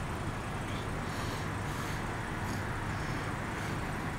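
Steady road traffic noise from passing vehicles on an urban street.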